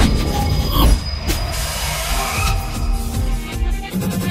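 Intro music with a heavy low beat; a sharp hit about a second in, after which it continues a little quieter.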